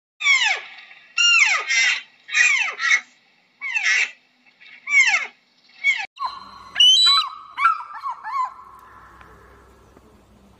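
Fallow deer calling: about six high calls, each falling sharply in pitch, spaced roughly a second apart. About six seconds in, they give way to quicker, shorter chirps over a steady tone that fades away.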